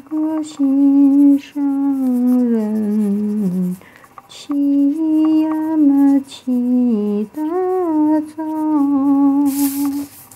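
A woman humming a slow, wordless tune in phrases of a second or two, holding notes and gliding down and up between them, with brief pauses between phrases. A short hiss comes near the end.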